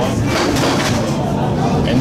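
Steady low rumble of a High Capacity Metro Train running, heard from inside the carriage, with passengers' voices over it.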